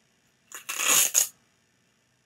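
Velcro strap on a sandal being ripped open: one loud tearing rasp lasting under a second, with a short second tear just after.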